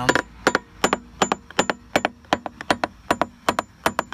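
Claw hammer tapping a 1985 Grady-White's fiberglass transom, about three to four quick taps a second, each with a short ring. The sharp, bouncy taps are the sign of a solid transom core, with no void or rot at that spot.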